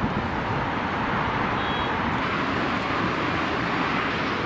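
Steady wind rushing over the microphone, with a heavy, fluttering rumble underneath.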